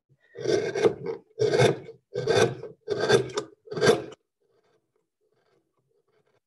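Hand-pushed carving gouge cutting texture into the surface of a wooden bowl: five scraping cuts in quick succession, about one every 0.7 seconds, then the sound stops suddenly.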